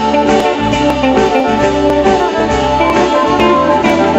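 Live jam-band bluegrass played loud: acoustic guitar, electric guitar, fiddle and drum kit in an instrumental jam with a steady beat.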